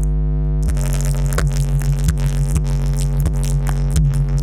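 Loud electronic dance music played through a large stacked outdoor sound system under test: a held deep synth bass note, joined just under a second in by a drum-machine beat with a hit about every two-thirds of a second.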